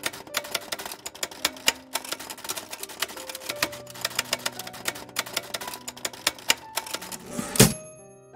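Typewriter sound effect: rapid, irregular key strikes, several a second, with one louder sweep near the end.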